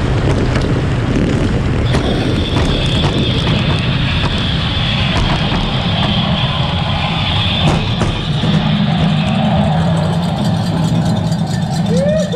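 Bobsleigh's steel runners on the ice track: a loud, steady rumble and hiss, with a high scraping tone for a few seconds in the middle and scattered clicks and knocks, as the sled runs out the last stretch into the finish.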